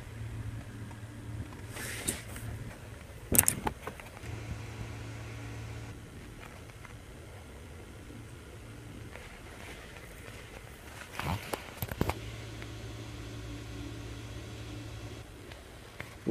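A faint low hum that fades in and out, with a few brief soft knocks about two, three and eleven seconds in.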